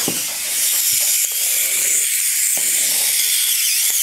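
A steady, high-pitched hiss with a few faint clicks and knocks.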